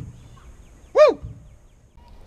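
A man's single high-pitched "woo!" whoop that rises and then falls in pitch, a brief shout of excitement at landing a big largemouth bass.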